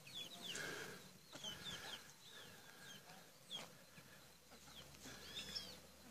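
Chickens and small birds: faint, irregular high cheeps and chirps with soft clucking.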